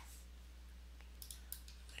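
A few faint computer-mouse clicks in the second half, made while selecting faces in CAD software, over a steady low electrical hum.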